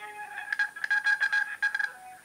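Hold music over a phone's speaker: a high electronic tone stuttering rapidly, about eight pulses a second, from about half a second in until near the end.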